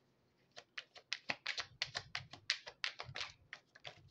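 A quick, irregular run of about twenty light clicks and taps, a few a second, starting about half a second in and lasting about three seconds.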